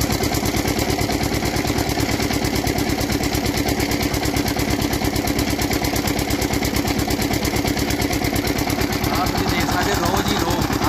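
Stationary single-cylinder diesel engine running a sugarcane crusher by belt, giving a loud, steady, rapid knocking beat.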